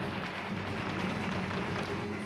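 Flamenco footwork: rapid, dense stamping of dancers' shoes on the stage, mixed with hand-clapping and faint guitar.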